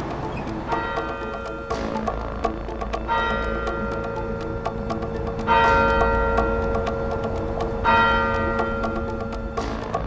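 A deep bell tolling four times, about two and a half seconds apart, each strike ringing on over a music bed with a low drone and a fast ticking beat.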